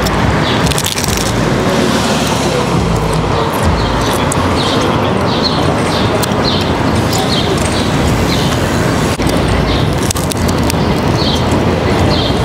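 Steady city street traffic noise with the low rumble of passing cars. Over it come repeated crisp crunches as a man chews a very thin, crispy-bottomed pizza crust, a few to the second in the middle of the stretch and again near the end.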